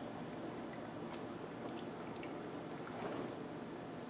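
A man gulping carbonated ginger ale from a can: faint swallowing and small wet mouth clicks.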